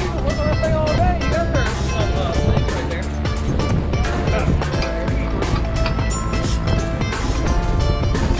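Music with a steady drum beat and a sung vocal line.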